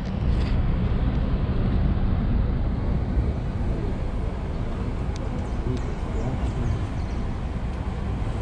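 Steady low rumble of street background noise with passing traffic, with a few faint light clicks in the middle.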